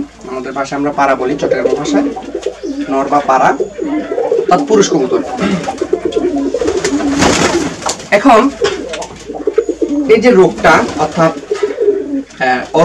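Many domestic pigeons cooing at once, overlapping wavering calls that run without pause, with a brief rustling burst about seven seconds in.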